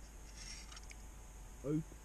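A brief, faint scrape of a spoon against a metal camping pot, with a few light ticks; a man's voice says "Oh" near the end.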